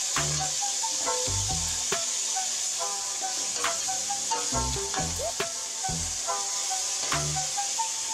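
Meat and herbs sizzling in an aluminium stockpot as a metal ladle stirs them, with occasional clicks of the ladle against the pot. Background music with melodic notes and a bass beat plays over it.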